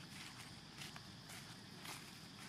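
Faint, scattered crackles of dry leaf litter being stepped on or handled, four short rustles over a steady high background hiss.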